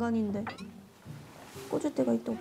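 Women talking in Korean: a drawn-out, whiny voice falling in pitch at the start, a short lull, then more talk near the end.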